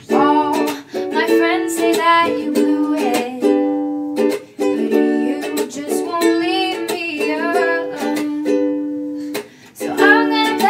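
A woman singing a pop song to her own ukulele, which she strums in a steady rhythm, with short breaks between the sung lines.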